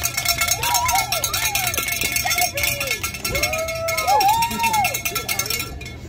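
A bell shaken rapidly and continuously, a fast, even ringing rattle that stops shortly before the end, with voices calling out over it.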